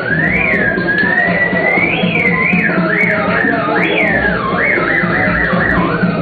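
A theremin plays a high, gliding melody that swoops up and down and then breaks into a fast warble in the second half, over a steady low electronic backing.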